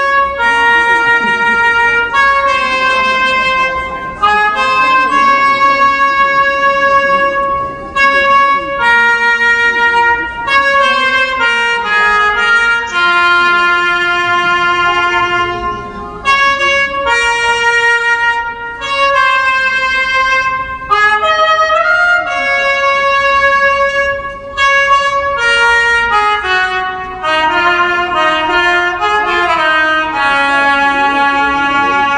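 Toyota Partner Robot playing a trumpet melody: a run of held brass notes that step up and down in pitch, with short breaks between phrases.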